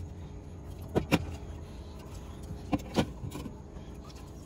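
Aluminium soda cans being set down on a glass refrigerator shelf and knocking against one another: four sharp clinks in two close pairs, about a second in and near three seconds in. A low steady hum runs underneath.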